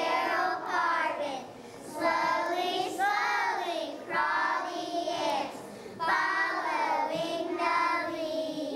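A group of young children singing a song together, in phrases about two seconds long with short breaths between.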